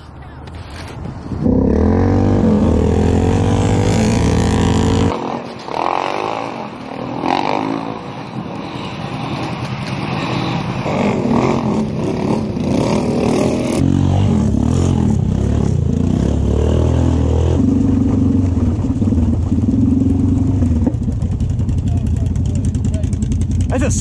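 ATV engines running and revving. The sound cuts in about a second and a half in, drops off near the fifth second, then builds back up and runs steady through the second half.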